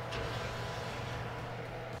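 Steady low hum of an open oven running, with no clatter from the baking dish.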